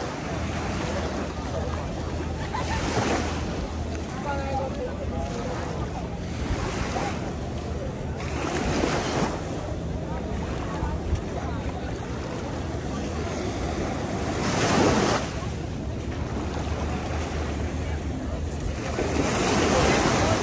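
Small waves breaking and washing up a sandy shore, swelling about every six seconds, the strongest surge about fifteen seconds in. Wind buffets the microphone underneath, with faint voices of people on the beach.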